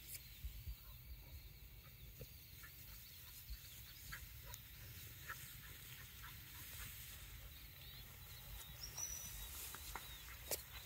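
Quiet open-air ambience: a low wind rumble on the microphone, with scattered faint ticks and one short high chirp about nine seconds in.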